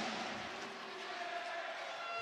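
Arena crowd noise: a steady hubbub of spectators at a roller hockey match, with a faint held tone running through it.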